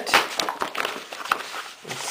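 Paper handling: crinkling and irregular small clicks and taps as a glossy card folder is handled and its flap lifted open.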